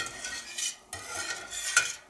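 A wire whisk stirring fresh cow's-milk cheese curds in warm whey in a stainless steel pot: uneven liquid swishing with light metal contact, dipping briefly about a second in. The stirring keeps the curds moving so they don't settle to the bottom while they firm up.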